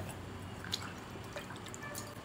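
Faint wet squishing of slippery hands rubbing a wet sugar scrub over skin, with a few small clicks.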